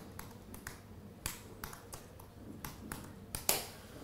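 Laptop keyboard typing: irregular key clicks, a few a second, with one sharper keystroke about three and a half seconds in.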